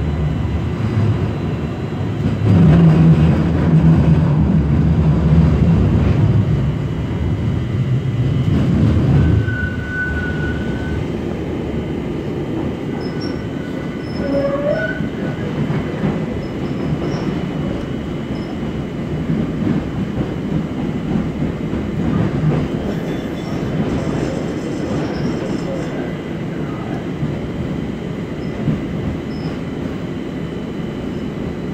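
Light-rail car running along the track, heard from inside the car: a steady rumble of wheels and running gear, heavier for the first nine seconds or so. Short thin squeals come through about ten and fifteen seconds in.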